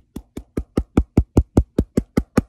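A fist knocking rapidly and evenly on a hard surface, about five knocks a second, like someone knocking at a door.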